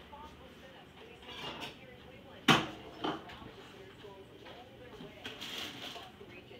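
Two hard knocks in a kitchen: a loud, sharp one about two and a half seconds in and a lighter one about half a second later, over faint background voices.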